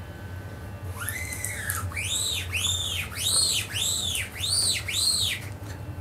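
Whistling: a run of about seven high tones, each rising and then falling in pitch, at about two a second, starting about a second in.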